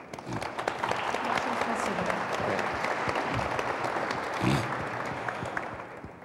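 Audience applauding, a steady patter of many hands that builds just after the start and dies away near the end.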